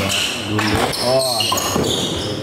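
Badminton doubles rally on a wooden court: a few sharp racket hits on the shuttlecock, about a second apart, with high shoe squeaks on the floor and a voice calling out "oh" in the middle.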